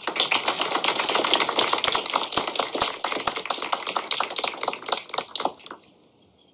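Audience applauding, the clapping dying away just before the end.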